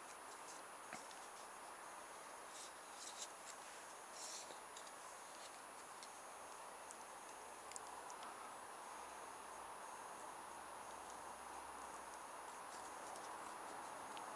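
Faint handling sounds of cardboard tubes being fitted together: a few soft taps and rustles about three and four seconds in, over a quiet steady background hiss.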